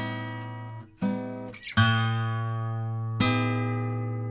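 Solo acoustic guitar plucking four chords about a second apart. Each chord is left to ring and fade over a deep, sustained bass note.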